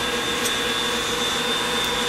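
Electric mixer running steadily on high speed with an even motor whine, beating egg white and hot sugar syrup for divinity. A couple of faint clicks sound over it.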